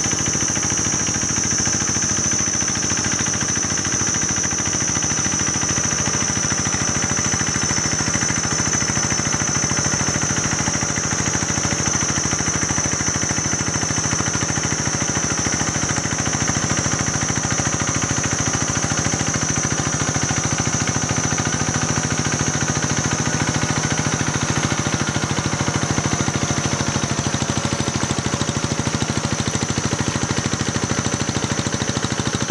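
Small single-cylinder engine of a walk-behind paddy tractor with cage wheels running steadily at an even, rapid beat as it works a flooded rice field. A steady high-pitched whine sounds alongside it.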